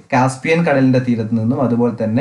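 A man speaking continuously in a lecture-style narration.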